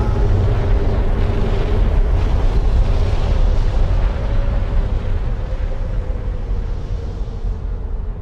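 Film-trailer sound design: a loud, deep rumble like a drawn-out explosion, with a faint held tone on top, easing off gradually over the second half.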